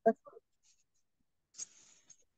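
A voice cutting off just after the start, then near silence as on a muted video call, with a brief faint rustle near the end.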